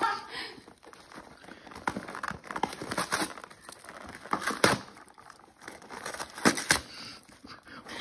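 A dog tearing and crinkling wrapping paper off a present with its mouth and paws: irregular rustling with a few sharper rips, the loudest in the second half.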